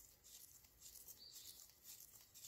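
Near silence, with faint light ticks and rustling as gloved fingers fit a metal collar over a valve adjustment screw on the rocker arm.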